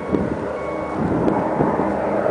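Low-flying four-engine piston propeller plane, a Douglas taken for a C-54, approaching, its engine drone growing louder toward the end. A high electronic beep sounds twice in the first second.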